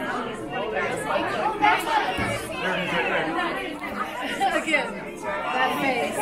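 Many people chattering at once: overlapping, indistinct voices with no single clear speaker.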